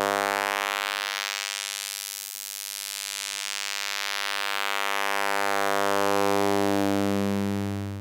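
A 100 Hz sawtooth tone through the Abstract Data ADE-20 Eurorack filter in high-pass mode, set to 25% resonance, during a cutoff sweep. As the cutoff rises, the buzzy tone thins to a quiet, high, reedy buzz about two seconds in. It then fills out again as the cutoff sweeps back down.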